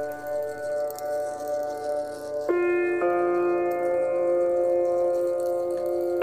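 Background music of sustained, steady chords, changing to a new chord about two and a half seconds in and shifting again at three seconds.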